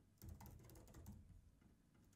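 Faint typing on a computer keyboard: a scatter of soft key clicks in the first second and a half, then a pause.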